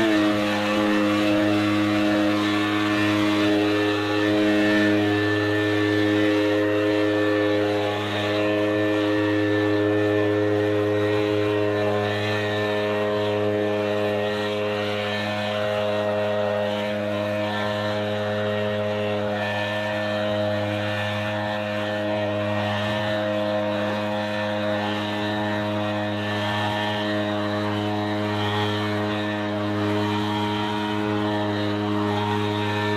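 Gas backpack leaf blower running steadily at high throttle, blowing dry leaves, with a constant engine drone that grows slightly fainter as the blower moves away.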